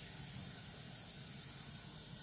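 Kitchen tap running steadily, water filling a cup for the bread dough.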